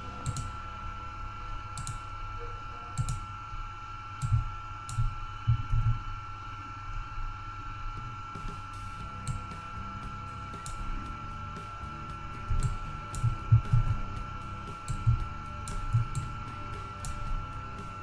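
Irregular clicks of a computer mouse and keyboard keys, with soft low knocks among them, over a steady high-pitched electrical whine and hiss.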